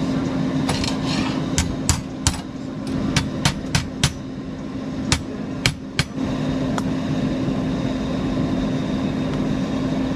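Hammer tapping on a small tack-welded steel box: about a dozen sharp metallic strikes, some in quick runs, that stop about six seconds in, over a steady shop hum.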